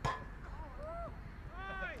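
Faint, high-pitched voices calling out in the background, two short arching calls in the second half, from children playing football.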